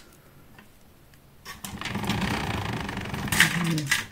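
Makeup products rattling and clicking against each other as they are rummaged through by hand: a dense clatter of small knocks starting about a second and a half in, with one sharper click near the end.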